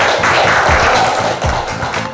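A small group clapping, over music with a steady low beat.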